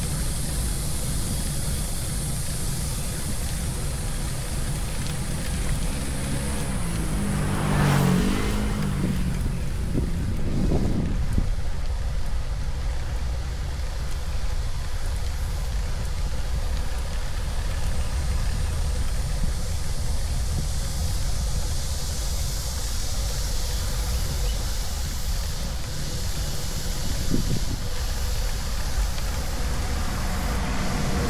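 Wind rumbling on the microphone of a bike-mounted action camera while riding, with tyre and road noise under it. A motor vehicle passes about eight seconds in, its engine swelling and fading.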